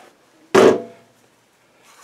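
A single short, loud knock about half a second in, from handling the shovel-handle grip and recoil pull cord at the snowblower, followed by faint handling noise.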